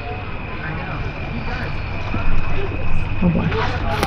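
Steady low background drone with a faint, thin, high steady tone over it, under soft scattered ticks while two people eat; a man says 'oh boy' near the end.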